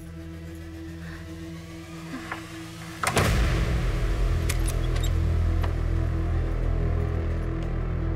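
Dramatic film background score: a soft sustained drone, then a sudden loud hit about three seconds in that opens into a louder, deep, steady drone.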